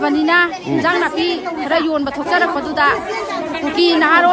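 A woman speaking, with people chattering around her.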